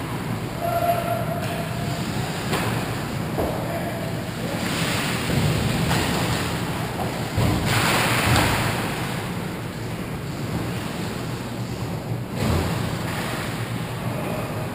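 Ice hockey skates scraping and carving the ice close to the net in repeated rushes, loudest about eight seconds in during a scramble in front of the goal.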